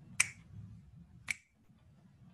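Two sharp clicks about a second apart, the first the louder.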